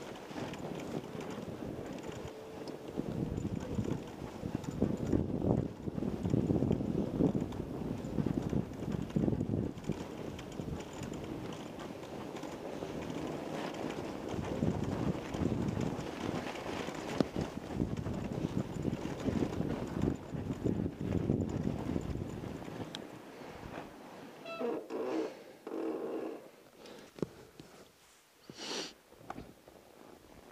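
Fat-tire ebike riding through snow: a continuous, uneven crunch and rumble of the wide tires in the snow and the bike's movement. It eases off about three-quarters of the way through, leaving a few short separate noises.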